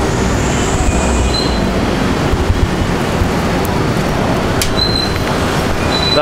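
Busy city street traffic: a steady rumble of car and motorcycle engines and tyres, with a brief high squeal about half a second in and a short high tone near the end.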